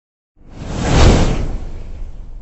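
A whoosh sound effect for a logo reveal, with a deep rumble underneath: it swells up about half a second in, peaks around a second in and then dies away.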